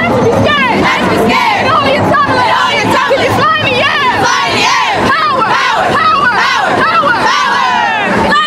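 A cheerleading squad screaming and shouting together in a tight group, many high voices overlapping loudly without a break.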